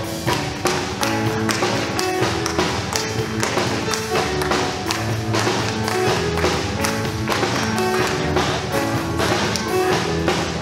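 Live gospel band playing an instrumental passage: held keyboard and bass notes under a steady beat of sharp percussive hits.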